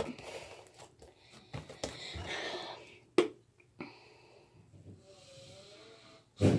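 Slime being squeezed and stretched by hand, with soft squelching. Two sharp knocks come about three and four seconds in, from household repair work.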